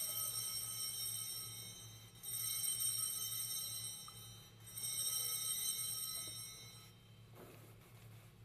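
Altar bells rung three times at the elevation of the host during the consecration. Each ring is a bright, shimmering chord that lasts about two seconds and dies away.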